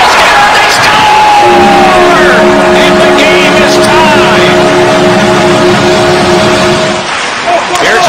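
Ice hockey goal horn blowing a steady chord for about five and a half seconds, starting about a second and a half in and cutting off near the end, signalling a goal. Excited voices are heard over it.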